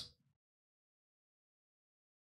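Silence: the tail of a spoken word dies away in the first instant, then nothing at all is heard, as if the microphone is gated off.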